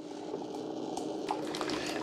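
Keurig K-Iced coffee maker running a 12-ounce fresh-water rinse in descale mode: a faint, steady hum from the machine, slowly getting louder.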